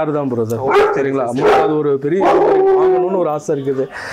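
American Akitas whining and crying in drawn-out, wavering calls, one cry held steady for about a second in the second half.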